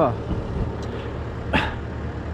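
A steady low engine drone runs throughout, with a short sharp knock or click about one and a half seconds in.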